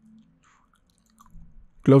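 Faint mouth clicks and lip noises from a narrator close to the microphone over a low steady hum, with a voice saying "close" near the end.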